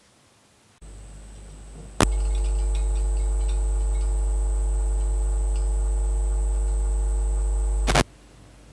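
Loud steady electrical hum with a row of even overtones and a thin high whine, picked up by a small microphone held up against a VFD clock's tubes and circuit. A quieter hum sets in about a second in, then a click about two seconds in brings the full hum, which cuts off with another click at the very end.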